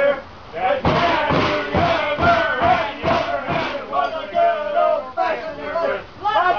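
A group of men chanting and shouting a rugby drinking song together. Over the first half they beat out about seven loud thumps in an even rhythm, roughly two a second, then the singing goes on without them.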